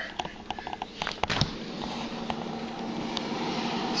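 A few light clicks and a knock as the freezer door is opened, then the steady hum of the running freezer with a low tone.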